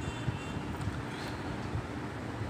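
Steady low background hum with no speech, the noise of the recording room between spoken phrases.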